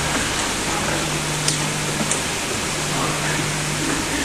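Steady hiss with a low hum underneath, and two faint clicks about a second and a half and two seconds in: the background noise of an old archive recording of a hall.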